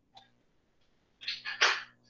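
Two short, sharp breathy bursts from a person, the second louder, over a faint steady hum.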